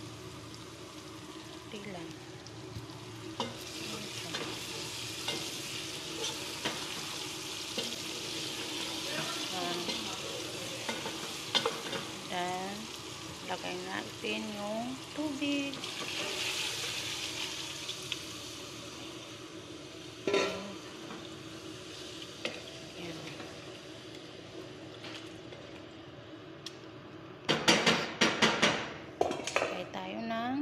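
Chicken pieces and tomato paste sizzling in a hot pot as they are stirred, with utensil scrapes and clicks against the pan. The sizzle swells at about sixteen seconds in as water is poured into the pot. Near the end comes a quick run of utensil clatters.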